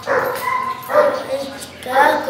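A dog barking in short bursts, mixed with a boy's voice.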